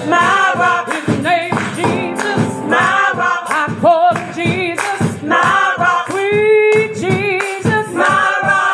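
Gospel praise team singing into microphones, with voices overlapping over a steady beat of about two strokes a second.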